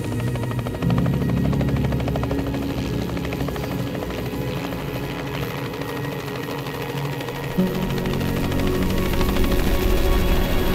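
Light helicopter lifting off and flying away, its rotor beating rapidly and steadily, over background music.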